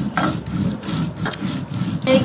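Spices being ground on a Bengali shil-pata: a stone roller rubbed back and forth over the pitted stone slab in a steady, repeating rhythm of gritty strokes.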